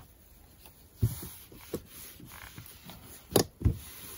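Fabric being handled and smoothed on a table, with a few soft knocks; the loudest comes near the end, as a clothes iron is picked up and set down on the fabric.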